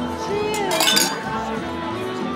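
Wine glasses clinking together in a toast: several quick, ringing clinks just before a second in, over background music and table chatter.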